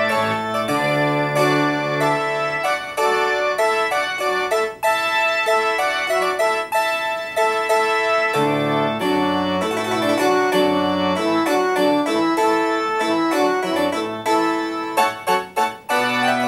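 Piano playing the recessional music, a continuous run of chords and melody notes.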